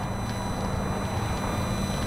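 Distant road traffic: a steady low hum over an even rumbling noise.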